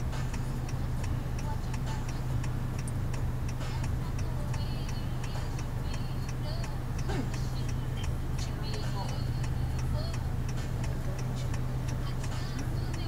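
Car turn-signal indicator ticking steadily over the car's low, steady engine hum, heard inside the cabin.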